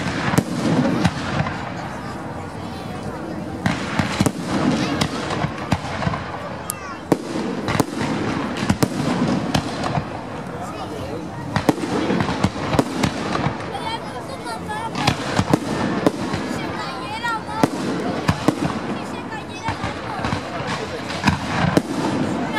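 Aerial fireworks display: a continuous barrage of shell bursts and crackling, with many sharp bangs in quick succession over a steady noisy wash.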